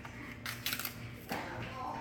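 A few quick clicks and rattles from a small spice jar of blackened seasoning being handled and opened, clustered around the first second, with a faint voice near the end.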